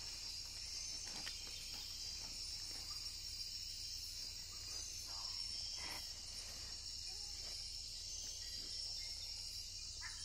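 Steady, dense high-pitched chorus of rainforest night insects, with a few faint, brief rustles from a person climbing through tree branches.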